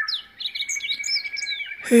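Birds chirping: several short falling chirps over a steady, finely pulsed high trill.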